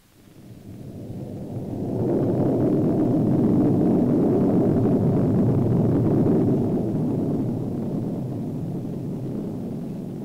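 Atlas-Agena rocket roaring at liftoff. The deep roar builds over the first two seconds, holds loud for several seconds, then slowly fades as the rocket climbs away.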